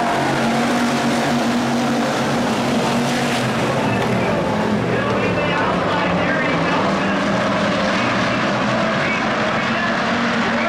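A field of IMCA Hobby Stock race cars running at speed together on a dirt oval, their V8 engines making a loud, steady drone of several overlapping engine notes.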